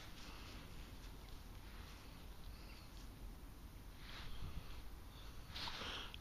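Quiet outdoor background hiss with a few soft rustles, about four seconds in and again near the end.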